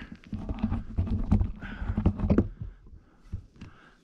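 Footsteps and scuffs over rocky ground with camera-handling knocks: irregular knocks and rubbing for about two and a half seconds, then only a few faint ticks.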